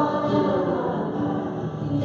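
Choir singing a hymn with instrumental accompaniment, the notes held and flowing without a break.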